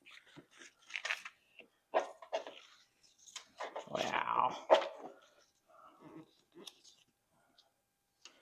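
A sheet of paper rustling in irregular bursts as a taped-on template is lifted off a golf cart's plastic body and pressed back flat, loudest about four seconds in.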